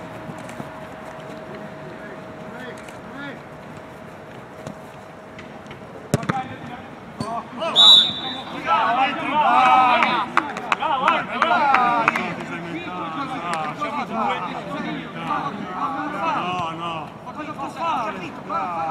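A football is struck hard with a sharp thud about six seconds in. A short, loud referee's whistle follows about two seconds later. Then several players shout over one another on the pitch.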